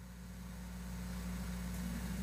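A steady low electrical hum with a faint hiss, slowly growing louder.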